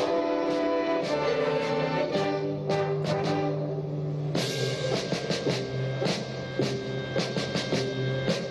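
Youth orchestra playing with held brass chords and a sustained low note. About halfway through, a run of timpani and drum strokes starts.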